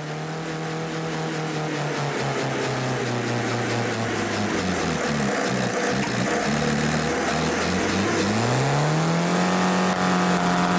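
Car engine running on cold, thick oil after a start at about minus 30: the revs sag, waver unevenly for a few seconds, then climb smoothly about eight seconds in and hold high.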